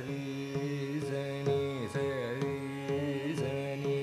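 Carnatic classical music in Raga Thodi: a male voice and violin carry a melody with heavy, wavering ornaments over a steady tanpura drone. Scattered mridangam and kanjira strokes come a second or less apart.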